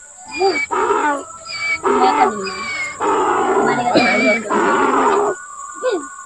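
Donkey braying: a loud run of alternating in-and-out calls that lasts about five seconds and stops shortly before the end.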